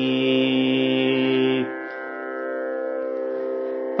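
Carnatic vocal music: a low male voice holds one steady sung note for about a second and a half, then stops, leaving a quieter steady drone on the tonic.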